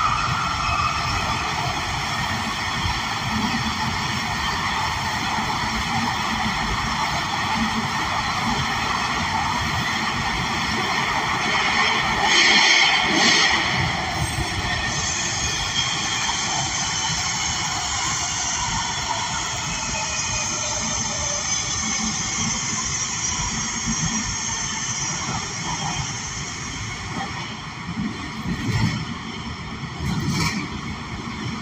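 Breda A650 subway car running through a tunnel, heard from inside: a steady rolling noise of wheels on rail, with a brief high-pitched screech about twelve seconds in and a whine that falls in pitch later on.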